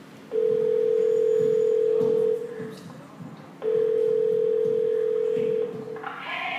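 Two long, steady electronic beeps at one mid pitch, each lasting about two seconds, with a gap of about a second and a half between them, over faint voices in the room.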